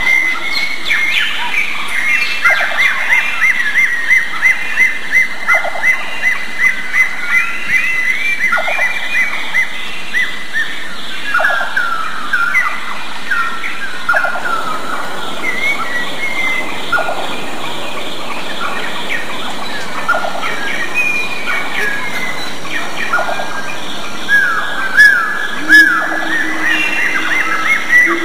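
Birds chirping and calling: a run of rapid, repeated high notes for the first several seconds, then scattered chirps and short falling calls, with the loudest calls near the end. A steady low tone comes in near the end.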